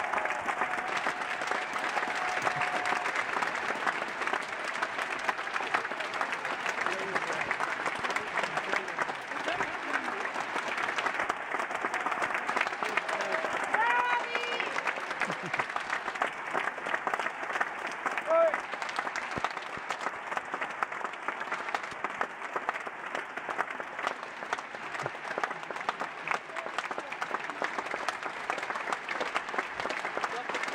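Large theatre audience applauding steadily during a curtain call, with a few brief voices calling out above the clapping.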